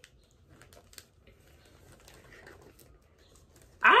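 Faint, scattered clicks and soft rustling of small gift boxes and packaging being handled, with one sharper click about a second in. A voice exclaims "ah" just before the end.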